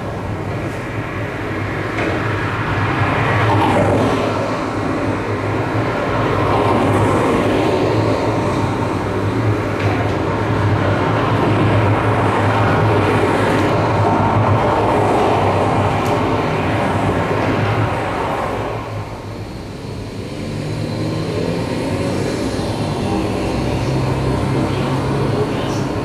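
Live electroacoustic improvisation of field recordings and processed radio: a dense wash of noise over a steady low hum, thinning out about three-quarters of the way through and then building again.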